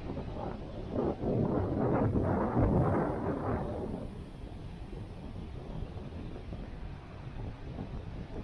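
Wind buffeting the microphone, with a stronger gust from about one to four seconds in, over the steady rush of surf breaking on the beach.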